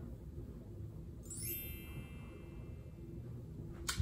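A high, glittering chime that sweeps downward in pitch about a second in, then rings on for about two seconds and fades, over quiet room tone.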